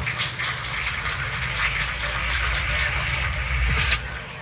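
Audience applauding: a steady patter of many hands clapping, with a low rumble underneath.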